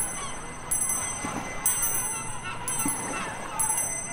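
Buddhist hand bell rung over and over, a bright high ring struck about once a second, each strike left to ring on into the next.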